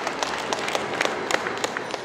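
Audience applauding, a dense patter of claps that starts to fade near the end.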